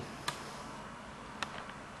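Handheld camcorder being handled and set down on a table: a few light clicks and knocks over steady background hiss.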